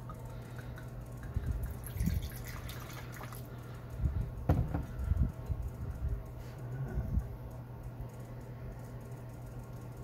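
Red wine poured from the bottle into a wine glass, with a cluster of sharp knocks about four to five seconds in and one more a little later.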